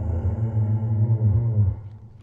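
Low, drawn-out rumbling call of the Google AR 3D Brachiosaurus, a synthesized dinosaur sound effect, fading out near the end.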